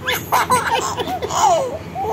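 A baby laughing in a quick run of short, high-pitched bursts of giggles.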